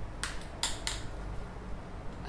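Guru 360 gimbal's arm banging against its own body: three light plastic clacks in the first second. Its motor has no rotation limit, so the arm can swing round and hit itself, which is scraping it up.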